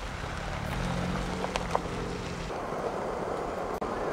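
A car driving slowly: a steady low engine hum and tyre noise, with the hum easing off about two and a half seconds in.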